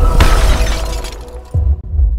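Intro sting of music with a glass-shatter sound effect a moment in, fading over about a second, then a deep low hit about a second and a half in.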